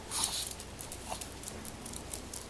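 Dogs playing: one short, high-pitched dog yelp about a quarter second in, a fainter second sound about a second in, and light clicking throughout.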